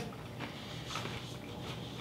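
Faint chewing of a peanut butter cup with pretzels, with a few soft mouth clicks, in a small room.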